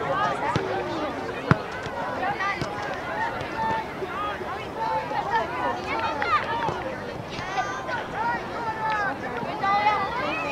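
Overlapping, indistinct high voices of players and spectators calling out across an outdoor soccer field, with one sharp thud about a second and a half in.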